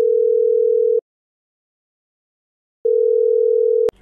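Telephone ringback tone heard on the caller's line while the called phone rings: a single steady tone, twice, each about one second long with nearly two seconds of silence between. It cuts off as the call is answered.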